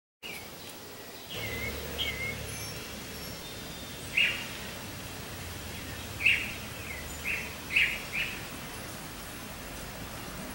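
Birds chirping in short calls: a few faint ones in the first seconds, a louder call about four seconds in, and a run of five between six and eight seconds, over a steady low hum.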